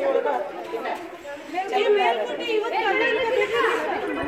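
Several people talking at once: overlapping chatter with no single clear voice.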